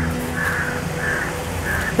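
A crow cawing over and over, short harsh calls about every half second, over soft sustained background music.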